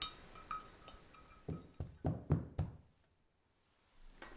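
A sharp clink of a spatula against a pot as jelly is scraped out. Then about five dull knocks in quick succession, kitchenware knocking on the worktop.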